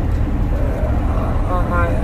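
Steady low road rumble of a car driving on the highway, heard from inside the cabin; a man's voice starts again near the end.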